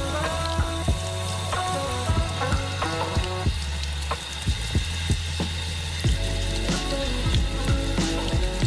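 Tap water running over hands and a silver coin as wet transfer paper is rubbed and brushed off it, with a light scrubbing sound from the bristles. Background music with steady low notes plays underneath.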